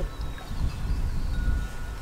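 Wind buffeting the microphone outdoors: an uneven low rumble that swells and dips, with a few faint steady high tones.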